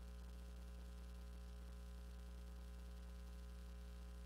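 Faint, steady electrical mains hum with a stack of higher overtones and a light hiss, unchanging throughout: the sound of an idle audio line with no one at the microphone.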